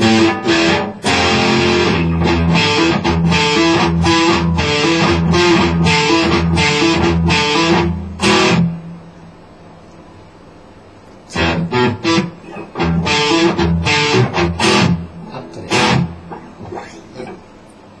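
PRS electric guitar playing an E minor étude: picked single notes and chord figures high on the neck. The playing stops about halfway through, then resumes a couple of seconds later with sparser notes.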